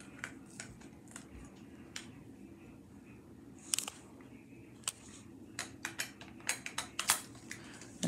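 Faint handling sounds: scattered sharp clicks and taps as small objects are picked up and fiddled with, coming more often in the last couple of seconds.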